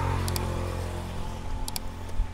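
A motor vehicle passing on the nearby road: a steady engine hum, loudest near the start and fading away. A few light clicks sound over it.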